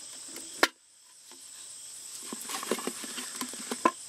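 Light ticks and rustles of an egg being put into a cardboard Pringles can, with a steady high chirring of insects behind. A sharp click comes just over half a second in, and then the sound cuts out for a moment.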